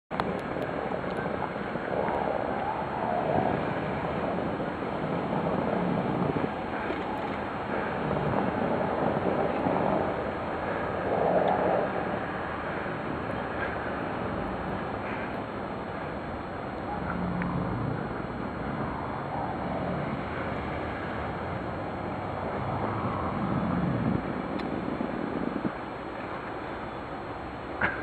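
Jeep Grand Cherokee SUV driving slowly through snow: a steady mix of engine and tyres on snow under wind noise on the microphone, swelling a few times.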